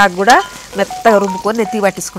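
Hibiscus leaves frying and sizzling in hot oil in a metal pot, stirred with a slotted ladle, under a woman's voice talking.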